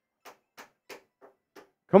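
Five faint, evenly spaced clicks, about three a second, followed right at the end by a man starting to speak.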